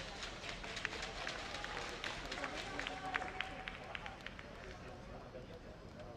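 Indistinct voices in a large sports hall, with scattered, irregular sharp taps.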